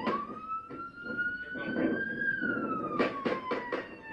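Police car siren wailing in body-worn camera footage, its pitch rising for about two seconds and then falling. Near the end comes a quick run of sharp knocks or bangs.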